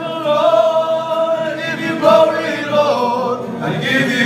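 A group of men singing a Christian worship song together, with long held notes.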